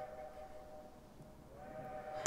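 Faint sustained chord from the film's musical score, a few steady notes held together. It fades out about a second in and swells back near the end.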